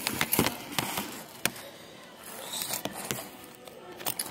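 Handling noise of a phone being moved about while it records: a few sharp clicks and knocks in the first second and a half, then quieter rubbing and rustling.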